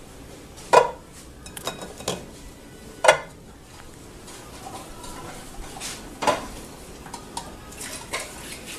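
Cooking pot clanking and knocking on a gas stove as it is set up to boil eggs. There are three sharp clanks, just under a second in, about three seconds in and about six seconds in, with lighter knocks between them.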